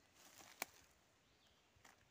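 Near silence, with faint rustling and one short sharp click as a sulphur shelf bracket fungus is broken off a fallen log by hand.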